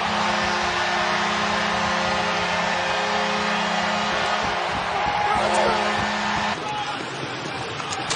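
Arena crowd cheering over a steady, low goal horn after a goal. The horn stops about six and a half seconds in, and a man yells briefly just before it ends.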